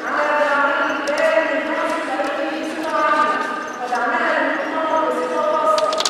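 Speech only: a woman talking steadily into a lectern microphone.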